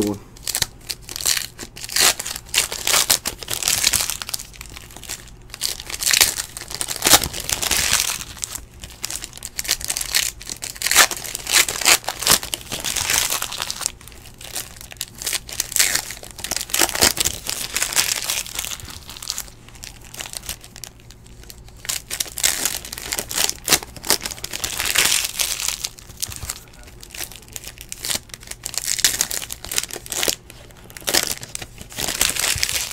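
Foil trading-card pack wrappers being torn open and crinkled by hand, an irregular rustling and crackling that comes and goes again and again.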